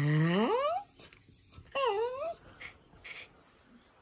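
Small dog vocalizing: a whine-like call that rises in pitch over most of a second, then a shorter dipping call about two seconds in. The dog is warning another dog away from its food.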